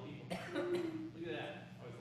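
A person talking in a room, broken by a short cough near the start.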